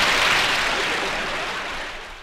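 Studio audience laughing and applauding, dying away.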